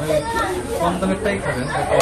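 Indistinct conversation: people's voices talking, with no words that can be made out.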